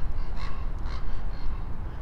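A few short, faint bird calls over a steady low outdoor rumble.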